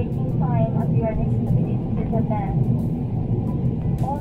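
Steady low cabin drone of a Boeing 777-300ER in flight, heard from a window seat, with a voice speaking in short phrases over it.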